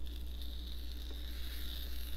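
Sauerkraut pinched and dropped by hand onto a sandwich, a faint soft patter, over a steady low hum.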